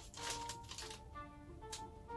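Quiet background music of sustained notes, with a couple of brief crinkles of a brown paper bag being opened.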